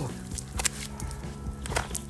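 Background music with a steady low line, over two short slaps of bare wet feet on a stone canal edge, a little over a second apart.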